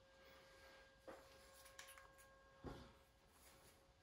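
Near silence, with two faint short knocks of a pistol being handled, about a second in and again about two-thirds of the way through, over a faint steady hum.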